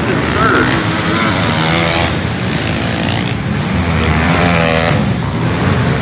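Several pit bikes racing on a dirt track, their small engines revving up and down as the riders work the throttle through the turns and jumps.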